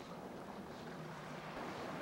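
Faint, steady wind and water noise on a small fishing boat at sea, with a low hum underneath.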